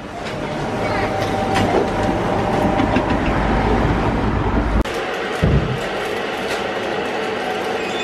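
Metal shopping trolley being pushed, its wheels rumbling and rattling over the floor and then paving, with an abrupt change in the rolling noise about five seconds in.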